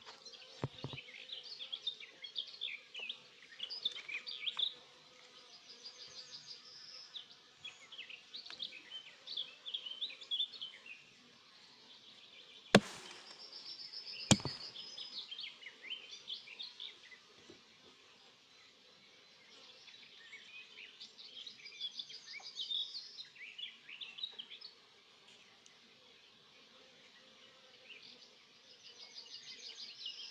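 Honeybees humming faintly around an open Langstroth hive, with songbirds chirping and trilling throughout. About 13 s in come two sharp cracks a second and a half apart, the inner cover being pried loose with a hive tool.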